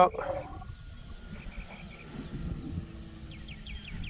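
Wind buffeting the microphone in an open field, with faint high chirps of distant birds.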